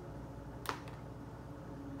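One sharp click about two-thirds of a second in, from dry spaghetti strands handled on a chair seat, over a faint steady room hum.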